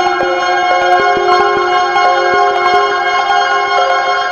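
Eurorack modular synthesizer playing ambient music: a sequence of short pitched notes changing every fraction of a second over a layer of sustained tones, with a lower note stepping upward.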